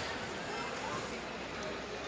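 Steady hubbub of a large crowd talking and calling out, with no single voice standing out.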